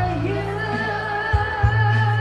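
A woman singing a Chinese-language pop song into a handheld microphone over a karaoke backing track with a steady bass line and drum beats. Her voice holds a long wavering note.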